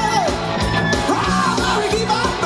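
Live rock band playing, with a lead singer belting out a song into a microphone over electric guitars and drums.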